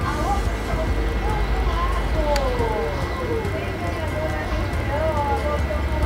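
Faint voices talking in the background over a steady low rumble, with one brief click a little over two seconds in.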